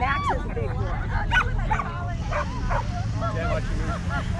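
A dog barking twice: a short arched yelp right at the start and a sharper bark about a second and a half in, over a steady low rumble.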